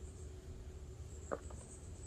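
Insects trilling steadily at a high pitch over a low rumble of wind. A brief sharp sound comes a little past halfway.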